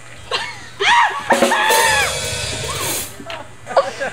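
A person's voice shouting: a short call about a second in, then a drawn-out yell lasting about a second and a half. A low bass note is held under the yell.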